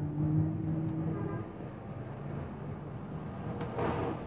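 A car engine running amid street traffic. A steady low hum is heard over the first second and a half, and a short rush of noise swells and fades near the end.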